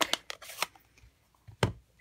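Rubber stamp and ink pad being handled on a craft table: a quick run of light clicks and rustles, then a single thump about one and a half seconds in as a stamp is pressed down.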